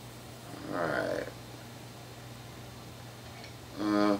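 A man's wordless vocal murmur about a second in, then a short hummed 'mm' near the end, over a steady low electrical hum.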